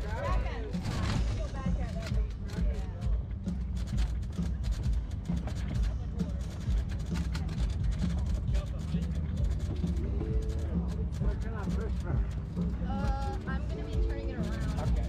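Wind rumbling and buffeting on the microphone, with voices and background music mixed in.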